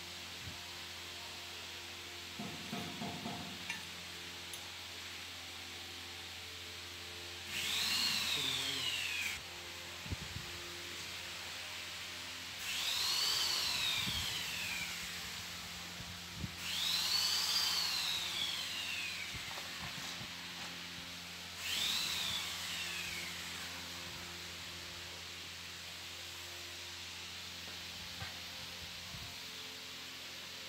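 A power tool's motor run four times in bursts of about two seconds, its whine rising and falling in pitch each time, over a steady low hum.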